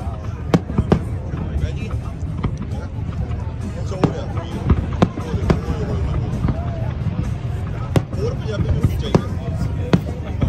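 Aerial fireworks shells bursting, a series of sharp bangs at irregular intervals of about a second or more, over a steady low rumble.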